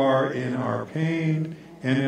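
A man's voice singing a slow, chant-like sung response in phrases of long held notes, with short breaks between phrases.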